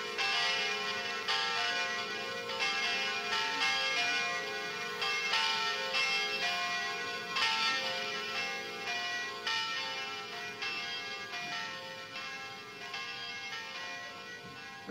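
Church bells ringing in a steady peal, about one and a half strikes a second, with the pitch changing from stroke to stroke and each stroke ringing on into the next. The peal slowly fades toward the end, as the bells are rung before the start of the service.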